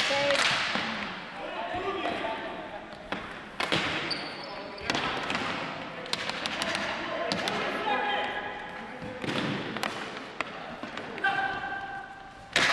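Ball hockey play in an echoing gymnasium: repeated sharp clacks of sticks hitting the plastic ball and the hardwood floor, with players' voices calling out between them.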